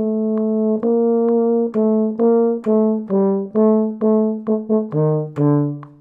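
Solo euphonium playing a melody against steady metronome clicks, a little over two clicks a second. It opens on a long held note, then moves to a new note on nearly every click, dropping to lower notes near the end before the playing stops and only the clicks carry on.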